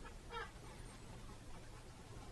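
A brief, faint creak from the painter's seat about half a second in, over quiet room tone.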